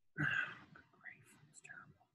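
A man muttering a few syllables under his breath in a whisper: one breathy burst about a quarter second in, then fainter hissy fragments.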